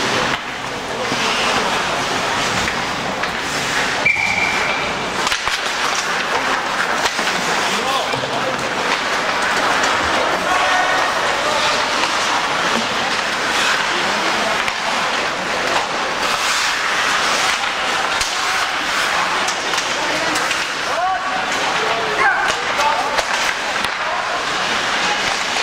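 Ice hockey game in an arena: a steady din of shouting voices over skates scraping the ice, with scattered knocks of sticks and puck.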